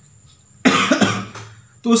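A man coughs, a sudden loud burst about a third of the way in with a second quick push right after, fading out before he speaks again.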